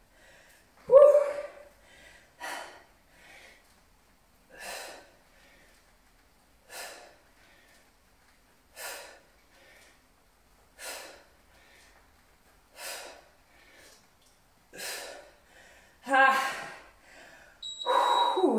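A woman breathing out hard with each repetition of dumbbell squats to overhead press: one sharp breath about every two seconds, with quieter breaths in between. A louder voiced grunt about a second in, and another near the end.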